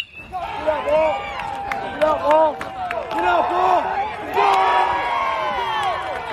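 A bat cracks against the ball right at the start, then a crowd of spectators cheers and shouts, many voices overlapping. The shouting swells again about four and a half seconds in.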